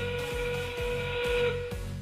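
A competition field's end-game warning sounding over the arena speakers: one steady whistle-like tone about a second and a half long, signalling that 20 seconds remain in the match.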